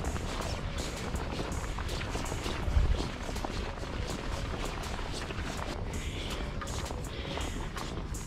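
Footsteps in loose sand, a run of short irregular scuffs, over a low rumble, with one louder low thump near the three-second mark.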